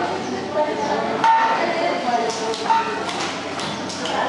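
People talking indistinctly in a large hall, with a sharp click about a second in.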